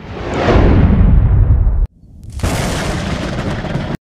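Logo-intro sound effect: a deep boom whose hiss sweeps downward into a heavy rumble and cuts off abruptly just under two seconds in. After a brief gap, a rushing whoosh swells up and holds until it stops.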